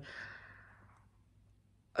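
A woman sighing: one soft breath out just after speaking, fading away over about a second into near silence.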